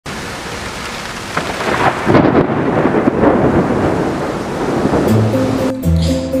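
Thunderstorm: steady rain with rumbling thunder that swells louder about one and two seconds in. Near the end, music with sustained low notes starts.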